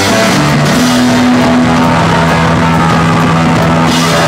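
Rock band playing live: electric guitar over a Ludwig drum kit, loud and steady, with long held low notes.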